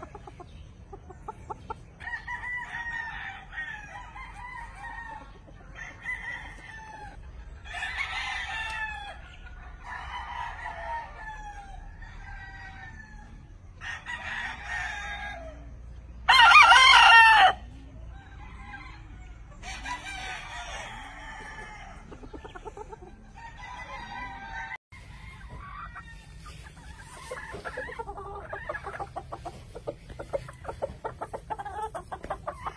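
Gamefowl roosters crowing one after another, some near and some farther off, with one much louder, close crow about halfway through.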